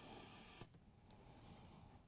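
Near silence: faint room tone and background hiss, with a faint click about two-thirds of a second in.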